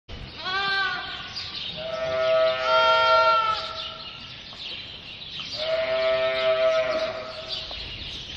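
Sheep bleating: a few drawn-out bleats, one overlapping the next, the loudest about three seconds in.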